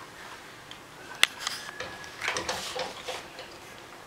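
Soft knocks and rustles of a toddler's hands against a closet door and frame, with one sharp click just over a second in.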